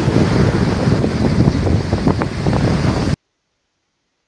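Wind buffeting a microphone over breaking sea waves on the Baltic shore, loud and steady, played back from a shore video. It cuts off suddenly about three seconds in when playback is paused.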